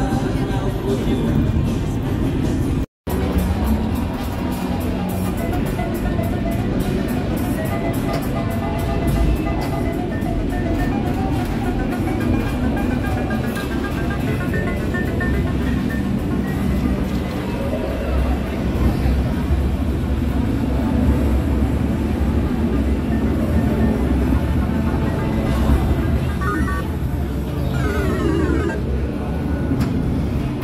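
Background music playing over the chatter of a crowd in a large hall, with a brief break to silence about three seconds in.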